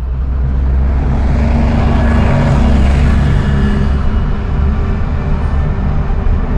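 A loud, low rumble that swells over the first two or three seconds and then holds steady.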